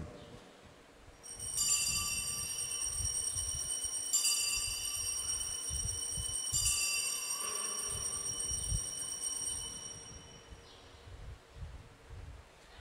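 Altar bells rung three times, about two and a half seconds apart, each ring hanging on high and bright before fading. They mark the elevation of the consecrated host at Mass.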